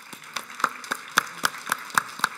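Applause: one close pair of hands clapping sharply about four times a second over a steady patter of more clapping.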